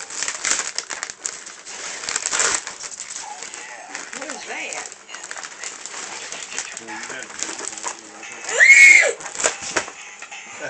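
Wrapping paper being torn and crinkled as a present is unwrapped, in quick ripping strokes during the first few seconds, with quiet voices in the background. A brief, loud, high-pitched squeal comes about nine seconds in.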